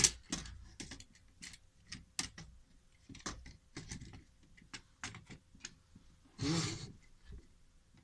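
Plastic frame and parts of a Ricoh Aficio fuser unit being handled and snapped back together: a run of irregular clicks and knocks, the sharpest right at the start, with a short rustling scrape about six and a half seconds in.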